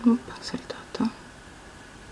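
A woman's voice, a brief murmured or whispered utterance lasting about a second at the start, then faint room tone.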